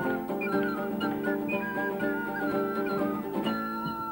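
Flamenco-style music: a nylon-string acoustic guitar playing chords, with a high, whistle-like melody from a small wind instrument gliding over it.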